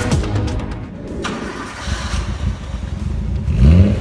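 Music cuts off about a second in, leaving the 1977 Datsun 260Z's straight-six engine running low through its exhaust. Near the end it is revved, with a loud rising note.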